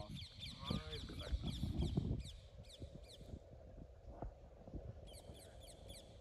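Birds calling: quick runs of short, high, down-slurred chirps through the first half and again near the end. Low rumbling noise in the first two seconds.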